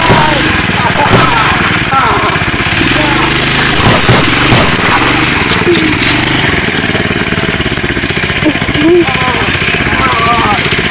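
Small go-kart engine running steadily as the kart drives off, with short shouts and laughter over it.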